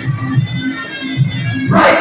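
Live Muay Thai fight music (sarama): drums beating a steady rhythm under the held notes of a Thai reed pipe. Near the end a loud burst of shouting cuts in over it.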